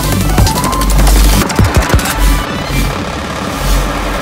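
Glitchy IDM electronic music with heavy sub-bass and clicking, broken-up percussion; the bright top end drops away about halfway through.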